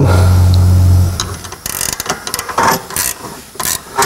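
A ratchet wrench turning the adjustment nut on a Camso UTV track's front angle-of-attack adjuster, giving uneven clicks and metal taps from about a second in. A low steady hum plays through the first second.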